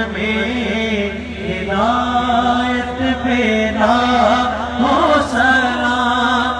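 A man's voice chanting an Islamic recitation in long, held notes, the pitch wavering and sliding in ornaments between the held notes.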